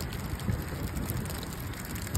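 A pile of netted shad flapping inside a cast net, a dense run of small wet slaps, with wind buffeting the microphone.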